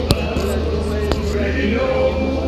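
A woman singing through a sound system at an outdoor concert, over a steady low hum, with two sharp knocks about a second apart.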